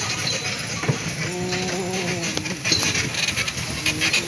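Horse-drawn carriage moving along: hoof clops and clinking harness over a steady rolling noise, with a short pitched sound for about a second midway.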